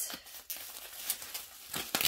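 Plastic wax-melt packaging rustling and crinkling as it is handled, in several short, irregular crackles.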